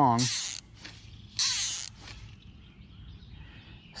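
Fly reel's click-and-pawl ratchet buzzing in two short bursts, about a second apart, as fly line is pulled off the reel.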